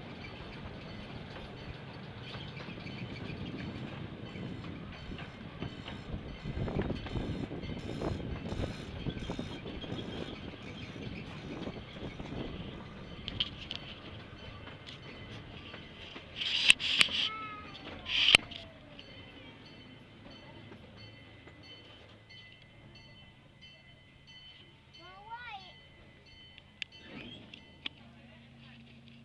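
Miniature zoo train rolling on its rails, a steady rumble as it slows to a stop. About two-thirds of the way through come two short, loud, high-pitched squeals, after which the rolling noise dies away.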